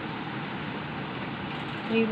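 Steady background noise, an even hiss with no distinct events in it.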